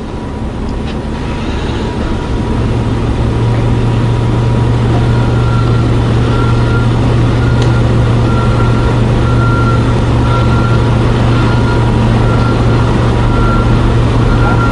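Steady low mechanical hum over continuous background noise, growing louder over the first couple of seconds, with a faint steady high tone above it.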